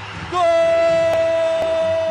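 Football commentator's long drawn-out goal cry, 'Gol!', held on one steady high note.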